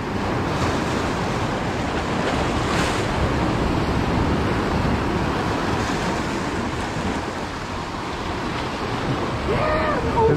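Ocean surf washing and breaking against the boulders of a rock jetty, a steady rushing with wind buffeting the microphone.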